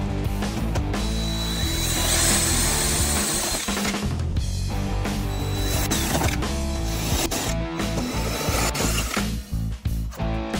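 Cordless drill/driver running in two long runs against a thin aluminium panel, over background guitar music.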